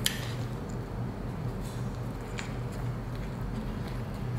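Faint soft handling of a McChicken sandwich as it is lifted and bitten into, with a few small ticks. Under it runs a steady low room hum.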